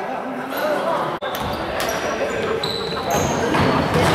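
Basketball bouncing on a hardwood gym floor and sneakers squeaking in short high chirps, with voices echoing in a large gym.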